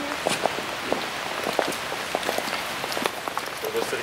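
Steady rain falling, with many separate sharp drop hits close by.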